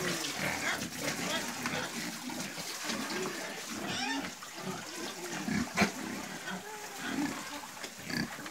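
Several pigs grunting repeatedly as they crowd around water being poured into their pen, with the water splashing from a watering can. A single sharp knock about six seconds in.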